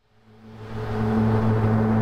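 Low ambient music drone of a few held tones, swelling in from silence over about the first second and then holding steady.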